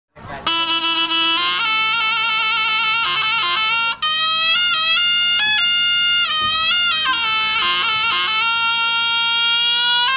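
Slompret, the Javanese double-reed shawm of jaranan gamelan, playing a bright, reedy melody line, with a brief break just before four seconds.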